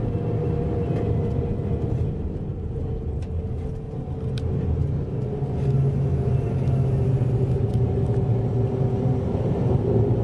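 Intercity bus heard from inside the passenger cabin: steady engine drone and road rumble with a constant hum, getting louder about halfway through. A few faint clicks or rattles sound over it.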